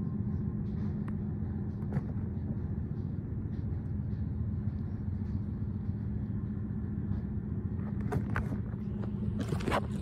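A steady low mechanical hum at an even level, with a few faint clicks, more of them near the end.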